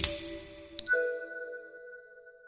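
Closing audio logo: two bright chime-like strikes, the second about three quarters of a second after the first, each ringing on in sustained tones that fade away.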